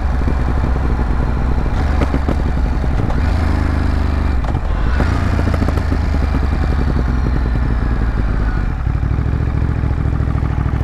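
A Ducati Monster 937's V-twin engine running steadily at riding speed. Short knocks and clatter come through as the bike rolls over rough, patched asphalt, a rumbling and tumbling.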